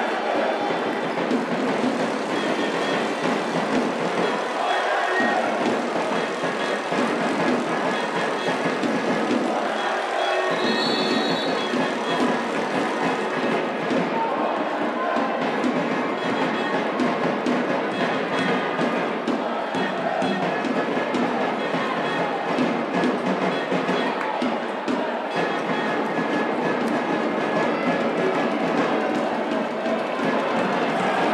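Steady, dense crowd noise of spectators in an indoor handball arena, with fans chanting and singing throughout.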